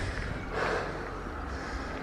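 A woman breathing as she jogs, over a steady rustling noise, with a swell in the breathing about half a second to a second in.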